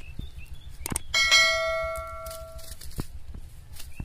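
A click, then a single bell-like ding that rings out with several overtones and fades over about a second and a half: the notification-bell sound effect of an animated subscribe-button overlay.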